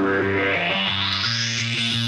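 Rock-style theme music: distorted electric guitar and bass playing sustained notes, with a rising swept effect climbing over them.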